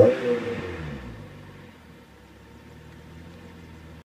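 Honda S2000's swapped-in F22 four-cylinder engine blipped right at the start, the revs falling away over about a second and settling into a steady idle.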